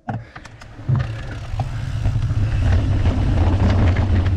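Wind rumble on a handlebar-mounted camera's microphone, with mountain bike tyres rolling over a dry dirt trail as the bike picks up speed downhill. A few sharp rattles come in the first second. The rumble builds over the next second or so and then holds steady and loud.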